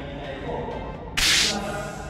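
A single short, loud swish, under half a second long, a little past the middle, over steady background music.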